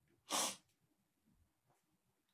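A single short, sharp burst of breath from a woman close to the microphone, about a third of a second in: a quick hiss with no voice in it.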